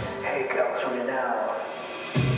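Pop dance track with the beat dropped out: a lone male voice delivers a short vocal phrase over sparse backing.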